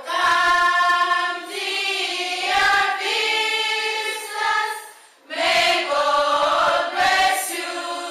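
Background music: a choir singing long held notes, breaking off briefly about five seconds in.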